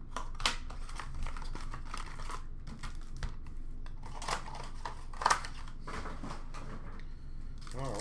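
Plastic wrapping on a hockey card box and its packs crinkling and tearing as the box is cut open with a box cutter and the packs are pulled out. It comes in several short rustling bursts, the loudest about five seconds in.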